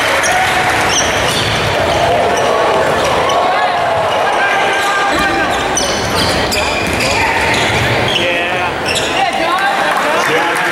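A basketball being dribbled on a hardwood court, with sneakers squeaking as players cut, and indistinct voices of players and spectators ringing in a large arena.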